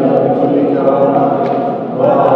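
A choir chanting a Byzantine liturgical hymn, several voices singing together on long held notes.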